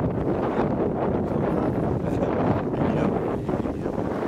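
Wind blowing across the camera microphone, a steady low rush that sits under everything.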